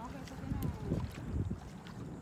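Wind on the phone's microphone: a low, uneven rumble.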